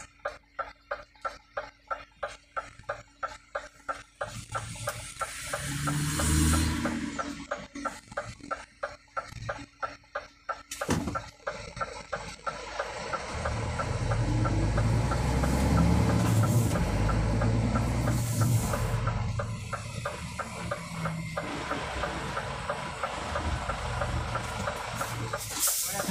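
Truck's diesel engine moving the truck forward slowly, its low sound swelling briefly about six seconds in and again for a longer stretch from about fourteen seconds. A steady quick ticking, about three a second, runs through, and there is one sharp click near the middle.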